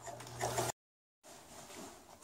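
Electric sewing machine running with a steady motor hum while stitching a zipper into a nylon tent fly. It cuts off suddenly under a second in, followed by a brief total dropout and then faint room sound.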